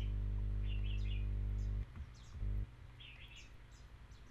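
Birds chirping in two short bursts over a steady low hum. The hum cuts out about two seconds in and comes back for a moment.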